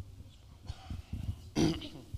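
Microphone handling noise: soft low bumps and rustles as a clip-on microphone is fitted to a seated man's clothing, with a short grunt-like vocal sound about a second and a half in.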